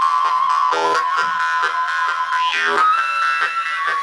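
Jew's harp played in a fast, steady rhythm of plucked twangs. The mouth sweeps its sound down in pitch now and then, over a held high overtone note that steps up slightly near the end.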